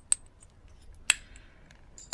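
Sharp plastic clicks from a small plastic glitter jar being handled and tapped over clear plastic tubs while loose glitter is added: one just after the start, a louder one about a second in, and a few faint ticks.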